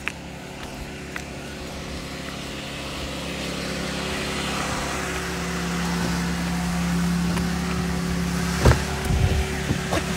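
Car engine running close by with a steady hum that grows louder over several seconds, then a few sharp knocks near the end.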